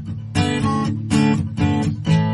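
Intro music: strummed acoustic guitar chords in a steady rhythm.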